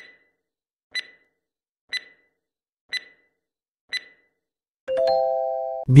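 Quiz countdown-timer sound effect: five short ticks, one a second, then a held electronic chime of a few steady tones for about a second, marking time up as the answer is revealed.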